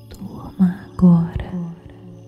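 A soft, breathy, near-whispered voice speaking a few words in two short phrases, the second one louder.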